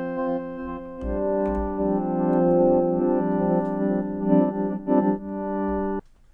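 Synthesizer pad chords from a Novation Peak played through the Empress Echosystem delay pedal in its granular mode. The sustained chords change about a second in, then turn fluttery and glitchy near the end, and cut off suddenly.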